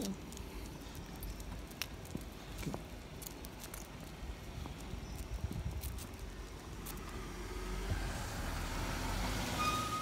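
A car pulling up slowly, its engine and tyres growing louder over the last couple of seconds as it comes close.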